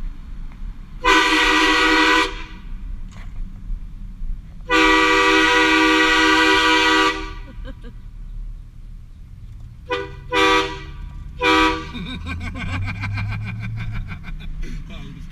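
Train horn fitted to a pickup truck, heard from inside the cab: two long blasts, then three short ones, over the truck's engine and road noise. The engine note rises near the end.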